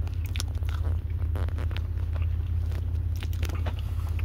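A person chewing a mouthful of chicken sandwich right at the microphone, with irregular short wet clicks of the mouth, over a steady low hum.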